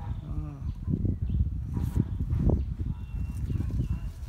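Low rumble and knocking handling noise from a handheld phone microphone carried while walking among garden plants, with a short pitched vocal sound near the start.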